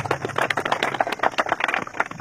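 A small crowd clapping: many irregular, overlapping hand claps.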